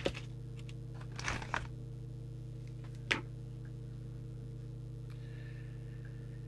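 Pen writing on paper in a few short scratchy strokes, spread over the first three seconds, over a steady electrical hum.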